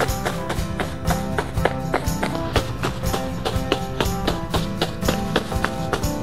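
Upbeat background music with a steady percussive beat.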